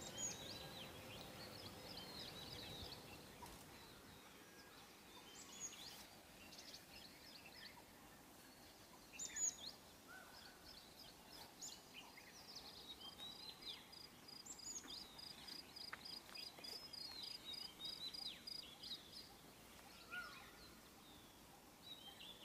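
Faint birdsong: scattered high chirps and short falling whistles, with a rapid trill repeated for several seconds in the second half.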